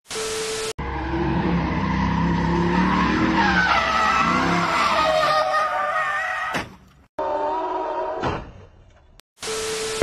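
A burst of TV-static noise with a steady tone, then a car's tyres squealing in a wavering, warbling howl over its running engine as it slides through a turn, breaking off about seven seconds in. A second static burst comes near the end.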